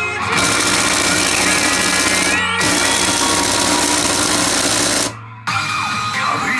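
P真・花の慶次3 pachinko machine playing a loud, dense buzzing noise effect. It breaks off briefly about halfway and cuts off suddenly about five seconds in, leaving half a second of near quiet before the machine's music and effects return.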